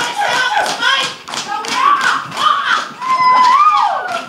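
A group of performers in a Samoan seated group dance, clapping and slapping in rhythm about three times a second while chanting and shouting calls. Near the end comes one long held shout that rises and then falls.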